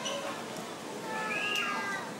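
A young child's high-pitched, wordless vocalizing about a second in, with a gliding pitch, over the murmur of background chatter.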